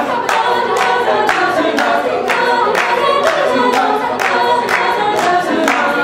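Mixed-voice a cappella group singing in harmony, with a steady beat of sharp handclaps about twice a second.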